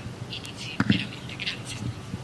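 Faint, soft whispered or murmured speech near the podium microphones, with a brief low bump a little under a second in.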